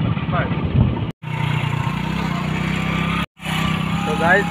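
Motorcycle engine running steadily while riding, with wind noise on the microphone. The sound drops out completely twice, briefly, about a second in and near the end.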